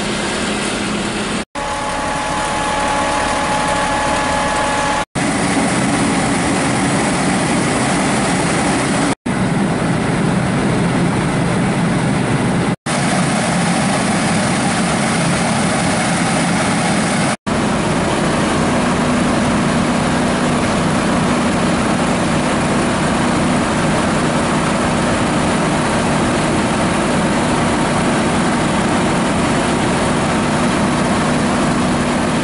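Fire apparatus engines idling, a steady mechanical rumble broken by five brief dropouts in the sound where the footage is cut. A steady hum holds after the last dropout.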